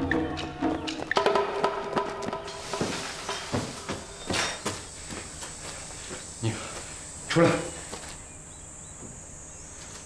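Drama soundtrack: a couple of seconds of score music, then a steady high-pitched insect drone of forest ambience with scattered footsteps and rustles.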